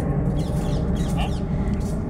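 Jeep engine idling, a steady low hum.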